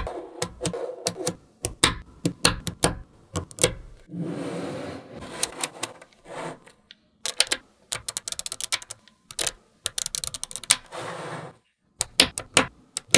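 Small metal magnetic balls clicking and snapping together as rows of them are placed and joined, in quick runs of sharp clicks. Twice the clicks give way to a longer rattle of many balls rolling and shifting at once, about four seconds in and near the end.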